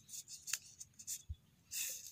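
Fresh coconut-leaf strips rustling and scraping against each other as they are threaded through a woven leaf flower: a few short crisp rustles, then a longer one near the end.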